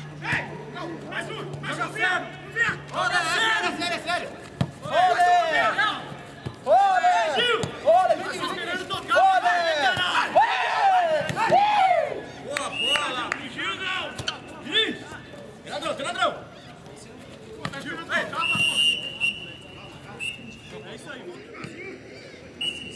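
Footballers shouting and calling to each other on a training pitch, with a steady high tone in the last few seconds.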